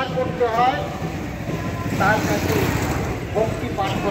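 People's voices in short snatches of talk over a steady low background rumble.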